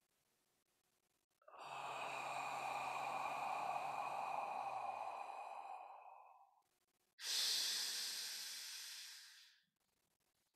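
A man taking two slow, deliberate deep breaths close to the microphone: a long breath of about five seconds, then a second that starts sharply a second later and fades away over about two and a half seconds.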